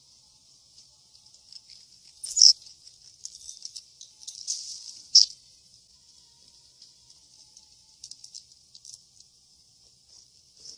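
A squirrel hidden in the Christmas tree giving short, high-pitched squeaks and chitters, with two louder squeaks about two and a half and five seconds in.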